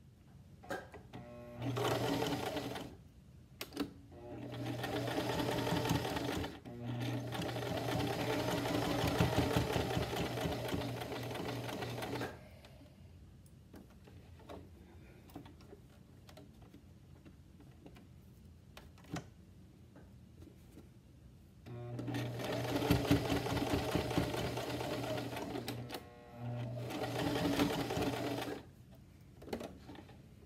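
Electric sewing machine stitching a seam in several short runs, stopping and starting again, with a long pause in the middle. This is the stop-start of backstitching to reinforce a seam that will take a lot of tugging.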